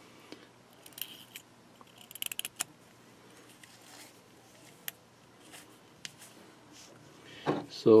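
Small metallic clicks and taps from a Zippo lighter's steel insert being handled: a few single clicks and a quick cluster of clicks about two seconds in.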